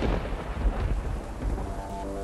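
Thunder sound effect: a heavy, rolling low rumble over rain hiss. Steady musical notes start to come in near the end.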